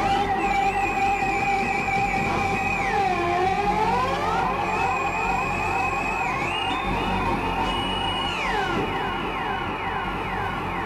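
Experimental electronic music: a steady held tone under wavering, siren-like synthesized tones, with many overlapping rising glides from about three seconds in and a string of repeated falling sweeps near the end.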